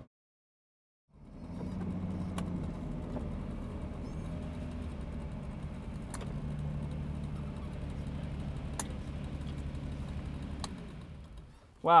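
1965 Lamborghini 350 GT's V12 engine running steadily at low revs. It fades in about a second in, after a silent gap, and dies away just before the end.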